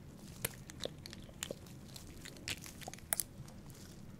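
A few small sharp clicks and taps from gloved hands handling a glass dropper bottle and its pipette, picked up close to the microphone; the loudest is a quick double click about three seconds in.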